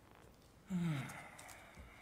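A man's short voiced sigh into a desk microphone, about two-thirds of a second in, falling in pitch and lasting under half a second.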